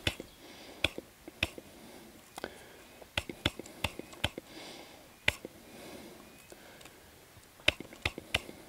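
Short, faint bursts of breath drawn through an insect aspirator (pooter), sucking ants up in quick little pulls. Sharp little clicks are scattered irregularly throughout.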